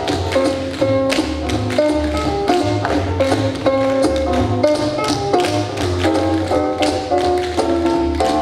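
A group of tap dancers' shoes striking the floor in quick, sharp clicks, over music with a melody and a bass line.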